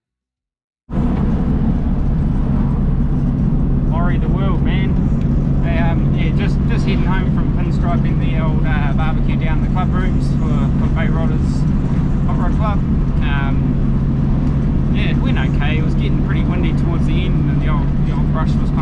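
Cabin noise inside a moving Morris Minor: the car's four-cylinder engine and road noise run steadily with a constant low hum. It cuts in suddenly about a second in.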